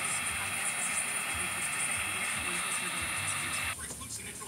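Electric heat gun blowing hot air onto a plastic car bumper, a steady hiss that cuts off suddenly near the end. The plastic is being warmed to soften it so the dent can be pushed out.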